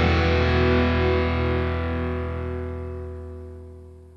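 A heavy metal song's final distorted electric guitar chord, with bass underneath, held and ringing out, then fading steadily away over the last couple of seconds as the song ends.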